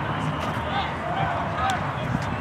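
Indistinct voices of people around a rugby pitch, talking and calling out at a distance over a steady outdoor background din.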